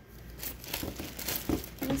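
Plastic liner of a meal-kit box's insulation crinkling as a hand rummages into it, in irregular crackles that grow busier toward the end.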